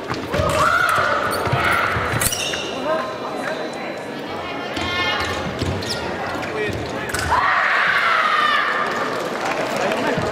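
Sabre fencers' feet thudding and stamping on the piste during an exchange. Loud voice calls come about half a second in and again from about seven seconds in.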